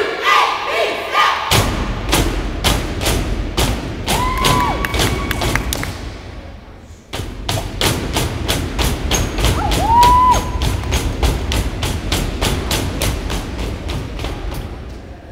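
Step routine: feet stomping and hands clapping and slapping the body in a steady beat of sharp hits, about three to four a second, with a short break about halfway. Two rising-and-falling whoops sound over the beat.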